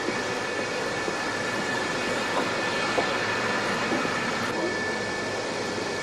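Steady turbine noise on an aircraft flight line: an even roar with a high, constant whine held over it.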